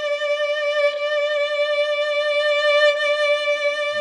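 A single long note bowed on a violin with a very wide wrist vibrato, the pitch wobbling evenly up and down. It is the kind of overly wide vibrato that sounds like an old singer.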